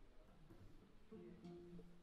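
Near silence with room tone, and a faint held instrument note coming in about a second in.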